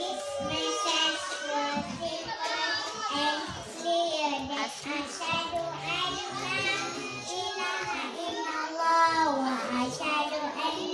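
A group of young children singing a nasheed together in unison.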